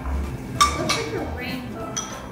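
Background music with a sharp metallic clink of a cooking utensil against a pan a little over half a second in, its ring briefly lingering.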